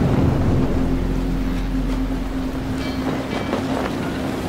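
Film sound of wind and sea at a sailing ship at night: a loud, rushing wind-and-waves roar that eases slightly, over a low held tone.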